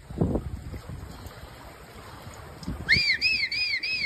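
Floodwater sloshing and splashing as horses and a person wade and swim through it. Near the end, a run of about five short, high whistled notes, each rising then falling.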